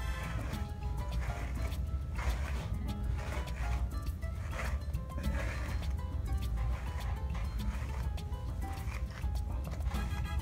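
A large slicker brush raking through a Goldendoodle's curly coat in repeated strokes, a scratchy rasp on each pull. The brush drags hard, really pulling and getting deep into the coat because of its size and long teeth.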